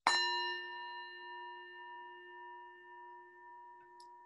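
A bell struck once, then ringing on with several clear tones that slowly fade.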